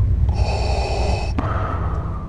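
Darth Vader's mechanical respirator breathing through the mask: a hissing inhale, then a longer, softer exhale from about halfway through, over a steady low rumble.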